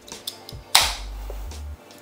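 Aluminium beer can tab cracked open about three quarters of a second in: a sharp pop followed by a short hiss of escaping carbonation gas.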